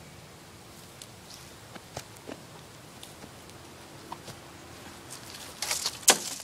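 Footsteps in dry fallen leaves: scattered faint crackles and rustles, with a louder burst of rustling near the end.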